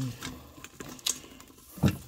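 Frozen green beans crackling in hot melted butter and bacon grease in a pot, with scattered sharp pops over a low sizzle.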